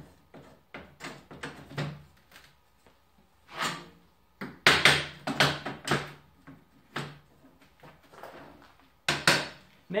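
Steel plasma-table slats clanking and scraping as they are set back into the slotted supports of a Langmuir Systems Crossfire Pro table, turned so the ruined edge is down. The knocks are irregular, with the loudest cluster of clanks near the middle.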